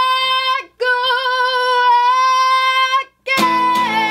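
A woman's voice singing two long held notes with no accompaniment, with a short break between them. About three seconds in, acoustic guitar strumming comes back in under her voice.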